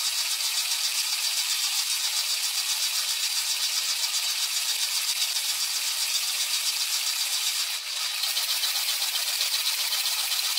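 Water spraying inside a running dishwasher, heard from a camera sitting among the racks: a steady, high hiss of spray hitting the walls and the camera housing, with a fast rattle. It eases briefly a couple of seconds before the end.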